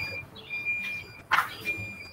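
Repeated high-pitched electronic beep from electrical equipment, each beep about half a second long and coming about once a second: a status alarm that, by the owner's account, signals everything is fine. A short burst of hiss-like noise comes a little past halfway.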